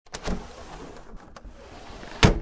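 Intro sound effect for an animated logo: a sudden noisy swoosh about a quarter second in that fades into a low steady hiss, with two faint clicks past the one-second mark.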